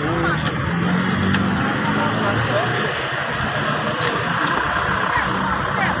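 Road traffic and motor vehicle engines running steadily, with the indistinct chatter of a crowd of onlookers underneath.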